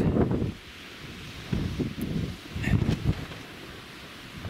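Strong gusty wind buffeting the microphone on an exposed hilltop: an uneven low rumble that comes in gusts, loudest in the first half second and again briefly around the middle.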